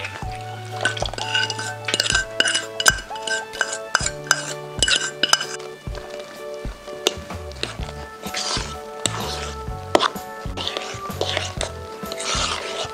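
A spoon stirring thick corn flour batter in a plastic mixing bowl, with scattered clinks and knocks, most of them in the first half, and scraping later on. Background music with a steady beat plays throughout.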